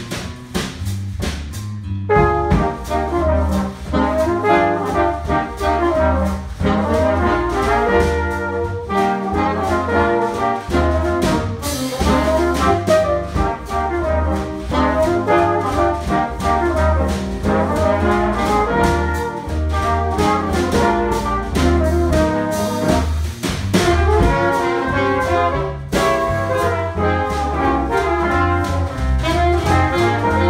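A small jazz combo playing: trumpet, trombone and saxophone carry the tune over drum kit, electric guitar and grand piano. The full band comes in about two seconds in, after a thinner opening.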